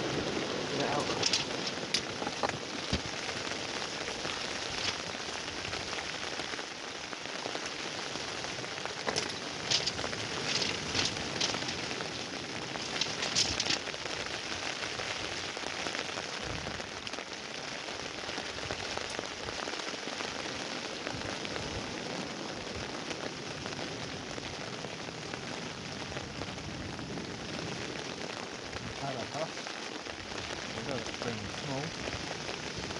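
Steady rain falling on a fishing shelter and waterproof clothing. Scattered sharper clicks come about two seconds in and again between about nine and fourteen seconds in.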